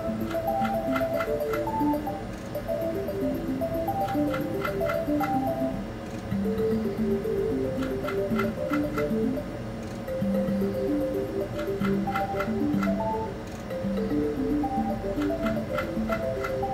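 A WMS Mystical Unicorn video slot machine on repeated spins: the game's spin tune plays a plinking run of short notes over the spinning reels, with quick ticks as the reels stop. The loudness dips briefly between spins, about every four seconds.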